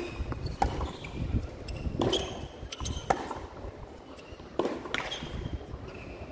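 Tennis rally on a hard court: sharp pops of rackets striking the ball and the ball bouncing, coming every second or so, with a low outdoor rumble beneath.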